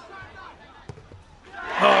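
A single dull thud of a football struck from the penalty spot, about a second in, followed near the end by a rising crowd cheer as the penalty goes in.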